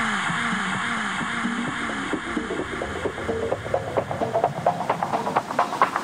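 Electronic dance track in a build-up. A wash of noise slowly fades over a synth bass note that repeats about twice a second and drops in pitch on each hit. Clicky percussion grows denser toward the end.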